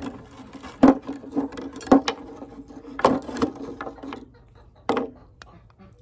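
Bungee cords and their hooks being unhooked from a rawhide frame drum: about five sharp knocks and snaps, several followed by a short low ring from the drum.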